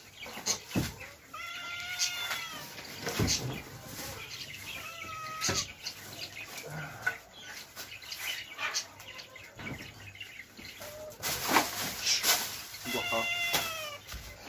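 A cat meowing three times in drawn-out, arching calls, one early, one about five seconds in and one near the end. Scattered knocks and rustling of bedding being moved run between the calls.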